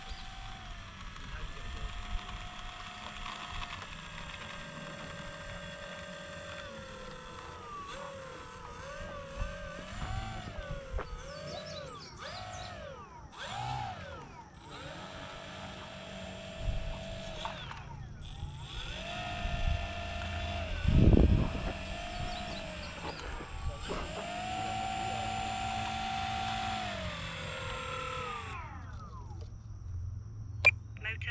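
E-flite Pitts S-1S 850mm biplane's electric motor and propeller whining as it taxis, the pitch rising and falling with throttle changes, then winding down to a stop near the end. A brief louder rumble about two-thirds of the way through.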